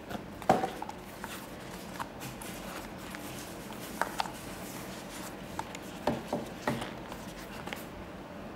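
Over-ear headphones being handled and turned over in the hands: scattered light clicks and knocks of plastic and metal parts, the loudest about half a second in and a few more close together near the end, over a steady background hiss.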